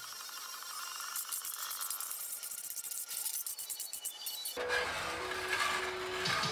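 Brief music-like transition sound, then, about four and a half seconds in, a metal scraper scraping across the steel top of a Blackstone griddle.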